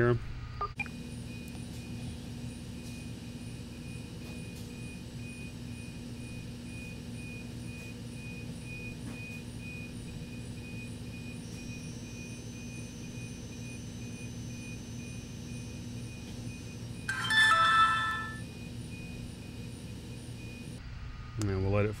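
Sonim XP5S rugged phone playing its short power-on chime while it boots after a power cycle: one bright multi-note tone lasting about a second, late on, over a steady low room hum.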